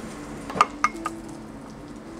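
A metal spatula and frying pan clinking and tapping against ceramic plates as fried pieces are slid off onto them. There are two sharp clinks with a short ring about half a second and just under a second in, then a few fainter taps.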